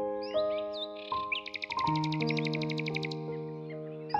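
Slow, gentle piano music with birdsong laid over it: a few short chirps in the first second, then a rapid trill of a dozen or more notes a second lasting about two seconds in the middle.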